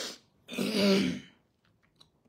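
A woman clearing her throat once, a rough burst of about a second, just after a short breath.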